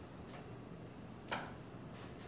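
Quiet room tone with a low hum, broken by a faint click and then one sharper click about two-thirds of the way through.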